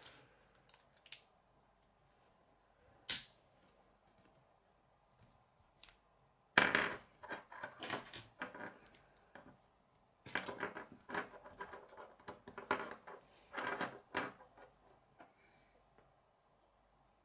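K'nex plastic rods and connectors clicking together and knocking on a wooden tabletop. A few separate clicks come first, with one sharp one about three seconds in, then two longer stretches of clattering from about six and ten seconds in.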